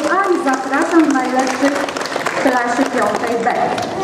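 A voice speaking, with audience applause underneath.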